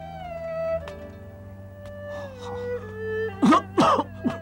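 Slow, mournful background music: long held notes that step down in pitch. About three and a half seconds in, a short, loud cry of a voice breaks in over it.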